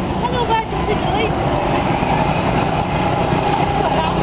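Go-kart engines running around a track, a steady drone of several small engines, with brief voices in the first second or so.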